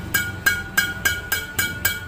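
String bed of a Yonex Astrox 88D Pro badminton racket, freshly strung with Exbolt JP string at 29 lbs, slapped repeatedly with the hand. It gives about seven sharp pings at roughly three a second, each with a short ringing tone, a very crisp ("garing") string sound.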